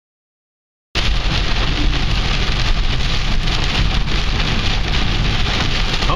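Heavy rain falling on a car's roof and windshield, heard from inside the moving car as a loud, steady hiss. It cuts in abruptly about a second in, after silence.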